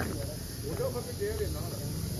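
Steady high-pitched hiss of insects in the background, with faint, indistinct voices talking between about half a second and a second and a half in.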